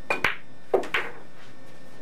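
A pool cue's tip striking the cue ball with a sharp click, followed almost at once by the click of the cue ball hitting an object ball. About three quarters of a second in come two more, duller knocks as the balls hit a rail or drop into a pocket.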